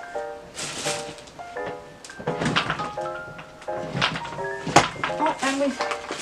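Wooden drawers of a chest of drawers being pushed and pulled, knocking and thudding several times, with one sharp knock about five seconds in, as a drawer breaks. Background music plays under it.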